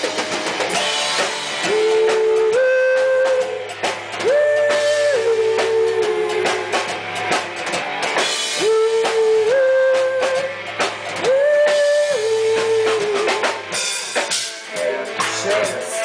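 Live rock band music: a drum kit and guitar under a melody of long held notes that step up and down in short phrases.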